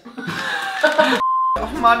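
A single steady electronic beep, about a third of a second long, about a second in, with all other sound cut out around it: a censor bleep dubbed over a word. Before it, a man's voice exclaims and chuckles.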